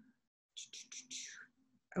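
A woman whispering a few short, soft syllables under her breath for about a second, as if reading text to herself.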